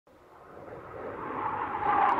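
A rushing whoosh with a faint steady tone inside it, swelling from silence and growing steadily louder, like something approaching overhead.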